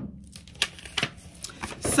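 A few short, light clicks and rustles of small handling noise, spread through the two seconds over a faint steady low hum.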